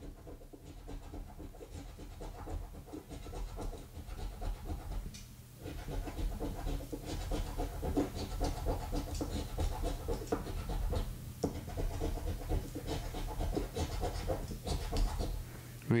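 Round metal scratcher tool scraping the latex coating off a Lucky 7's scratch-off lottery ticket in many short, repeated strokes, over a steady low hum.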